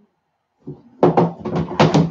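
Plastic reptile-rack tub scraping and groaning against the rack's shelf as it is slid out, in several loud strokes starting about half a second in.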